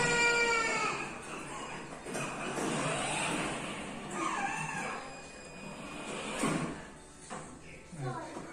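A child's voice: one long, high-pitched call in the first second, then shorter calls and vocal sounds, quieter toward the end.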